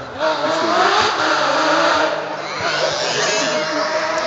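Porsche 997 GT3 rally car's flat-six engine at high revs on a special stage, suddenly louder about a quarter second in, its pitch climbing and dipping as the car is driven hard.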